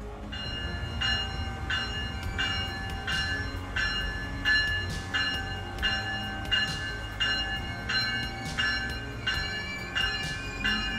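An Amtrak ACS-64 electric locomotive's bell ringing steadily, about three strikes every two seconds, over a low rumble of idling rail equipment.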